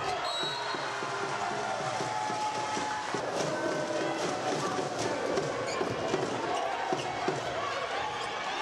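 Volleyball being played in a sports hall: crowd voices and cheering carry throughout, with several sharp slaps of the ball being hit and a few shoe squeaks on the court floor.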